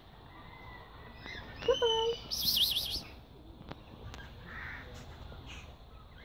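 A white cockatoo calling: a short call about two seconds in, followed at once by a shrill, warbling screech lasting under a second.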